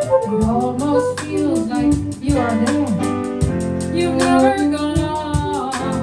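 A live jazz band plays an instrumental passage: harmonica carries a wavering melody over piano, bass and drums keeping a steady beat.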